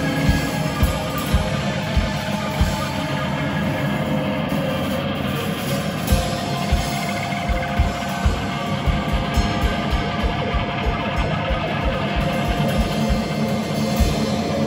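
A live emo/post-rock band playing at full volume: electric guitars over a drum kit, with kick-drum hits driving the rhythm.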